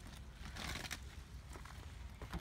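Faint rustling and scraping as a flexible RV sewer hose is handled, its two ends just twisted together, with a few light clicks.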